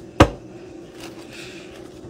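One sharp knock of a hard object shortly after the start, then faint room tone.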